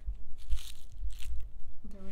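Crinkly cat toys rustled as a kitten bats at them: two short crinkling rustles about half a second and a second and a quarter in, over a low rumble.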